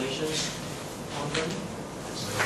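A pause in a man's talk: low room noise with two brief, soft rustles, about half a second and a second and a half in.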